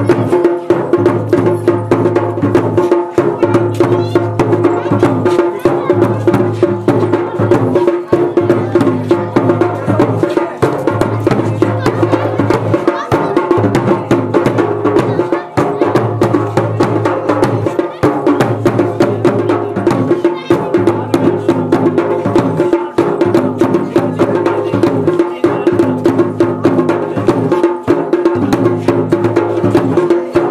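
Garhwali Pahari folk dance music with fast, dense drum beats over a steady held tone, and a low bass pattern that repeats every two to three seconds.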